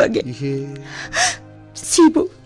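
A person in a radio drama gasps sharply twice, about a second in and again near the end, over a low, sustained background music bed.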